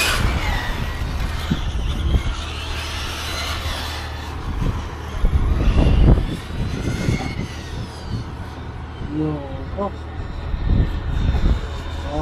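Electric RC car's motor whining, its pitch rising and falling as the car speeds up and slows through the corners of the track, over a steady low rumble of wind on the microphone.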